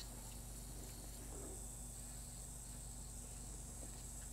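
Electric nail file (e-file) running steadily with a large flame diamond bit as it works along the cuticle, heard as a faint, even high-pitched whine.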